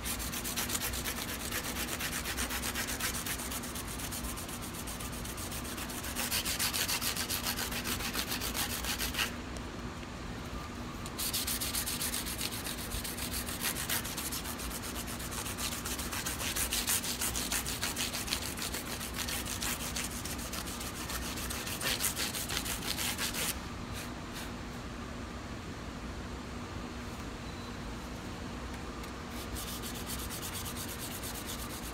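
400-grit sandpaper rubbed by hand over the fret ends along the edge of a guitar fretboard, in quick back-and-forth strokes that round over and smooth the fret ends. The strokes pause briefly about nine seconds in and are lighter for the last six seconds.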